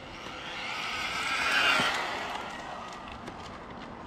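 Small brushless-motor RC car (MJX Hyper Go H14MK on a 3S LiPo) making a high-speed run: its motor whine and tyre noise grow louder to a peak a little before halfway, then fade as it passes and moves away.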